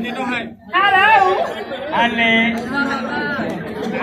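Speech only: loud, animated talking between stage performers, with a brief pause about half a second in.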